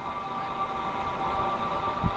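Soft background music: a few sustained tones held steady, with no beat.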